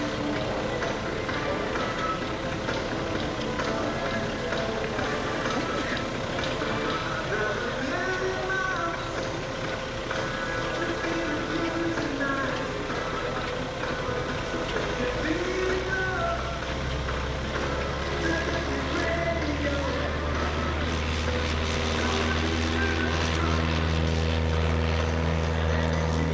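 Engines of a Piper J3 Cub and the pickup truck carrying it on a roof rack, running at speed as the truck accelerates and the Cub lifts off: a steady low drone that comes in strongly about halfway through and grows toward the end. Airshow public-address music and an announcer's voice play throughout.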